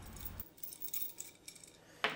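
A few faint metallic clinks and jingles from a small steel chain hanging off a threaded rod, and the nuts on it, as two nuts are twisted against each other by hand to lock them together.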